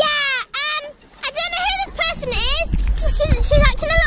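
A young child's high-pitched voice in a run of short cries and squeals that glide up and down in pitch, with a low rumble underneath from about one and a half seconds in.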